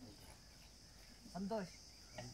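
Faint, steady, high-pitched chirring of insects in the background.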